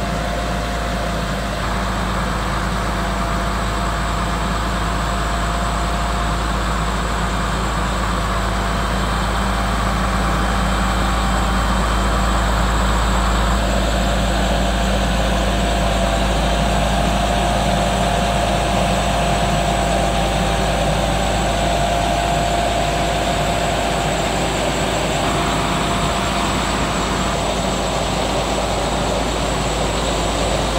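Heavy truck diesel engine running steadily to drive a knuckle boom crane's hydraulics as it moves a loaded 20-foot shipping container, a low drone with a steady whine that strengthens about halfway through.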